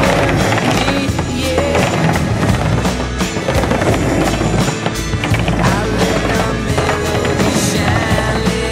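Music with a steady beat, and under it a skateboard's wheels rolling on concrete.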